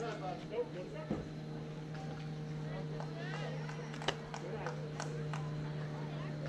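Faint, unclear voices of players and spectators over a steady low hum. About a second in comes a single sharp crack of a bat hitting the ball, and about three seconds later a short sharp click.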